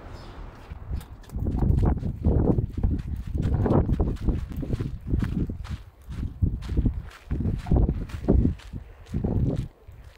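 Wind buffeting the phone's microphone in strong, irregular gusts, with footsteps on gravel.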